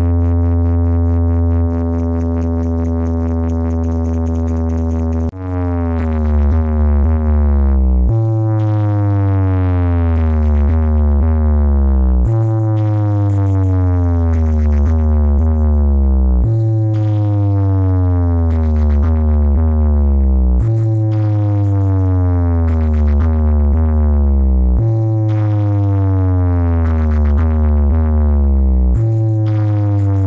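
Electronic bass test-tone track of the kind played at DJ box competitions: a long steady deep bass tone for about five seconds, then deep bass sweeps gliding downward in pitch, repeating about every four seconds.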